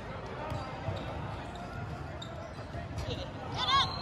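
Indoor basketball game: steady, reverberant hall noise of players and spectators, with a few faint knocks of the ball on the hardwood court. A brief high-pitched sound comes near the end.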